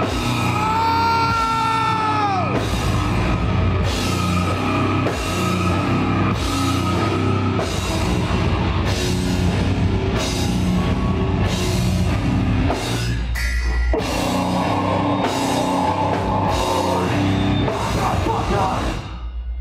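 Heavy metal band playing live: distorted guitars, bass and a drum kit at a slow, heavy pace, with a crashing hit about once a second. A high sustained note bends downward in the first two seconds, and the band stops briefly about two-thirds of the way through before crashing back in.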